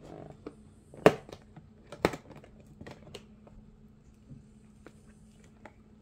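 A perforated cardboard door on an advent calendar being pressed and popped open by fingers: two sharp clicks about one and two seconds in, then lighter taps and rustles of card.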